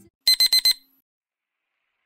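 Four rapid, high-pitched electronic beeps like a digital alarm clock or timer, lasting about half a second in all.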